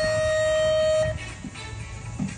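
A loud, steady horn or buzzer tone, one held note lasting about a second and then cutting off, over background music.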